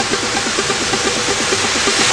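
House/electro dance music in a breakdown with the bass drum out: a fast repeating synth figure under a noise sweep that grows brighter, building tension.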